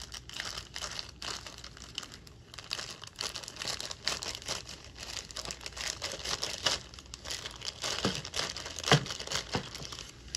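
Clear plastic bag crinkling and rustling as it is cut open with scissors and pulled off a sprue of plastic model-kit parts, with many small crackles and a sharper click near the end.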